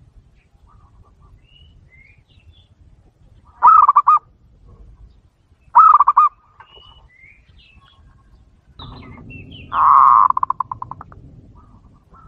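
Zebra dove (perkutut) cooing: two short, loud, rapidly pulsed coos about two seconds apart, then a longer call near the end that trails off into a run of quick, fading pulses. Faint twittering of small birds in between.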